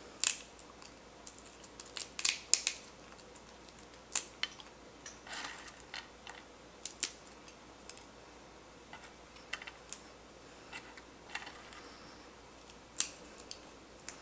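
Dried vanilla beans snapped into pieces by hand and dropped into a glass jar: irregular sharp little snaps and clicks, a dozen or so, with the loudest cluster about two seconds in.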